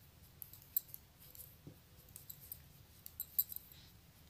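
Metal knitting needles clicking and tapping lightly against each other as stitches are purled. Faint, irregular little clicks that come in small clusters.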